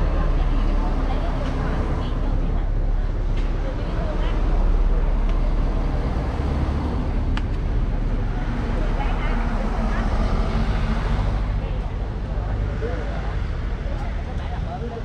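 Large coach buses driving past close by on the road, a heavy low engine and tyre rumble that is loudest as the first one goes by, with people's voices in the background.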